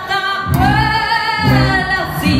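Live rockabilly band: a woman sings a long, gliding note into the microphone, and about half a second in the upright bass and the rest of the band come back in strongly under her.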